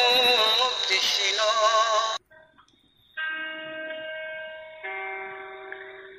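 Song: a singer's long held, wavering note with accompaniment, breaking off about two seconds in. After a moment's silence come steady held instrumental chords, changing once near the end.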